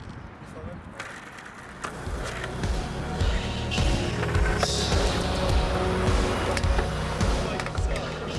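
Skateboard wheels rolling over asphalt, getting louder about two seconds in, with a few sharp knocks of the board.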